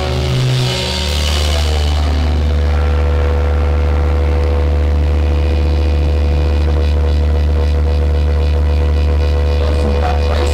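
Electric guitar and bass amplifiers left on between songs, giving a loud, steady low hum and drone with held ringing tones above it; the drums stop about a second in.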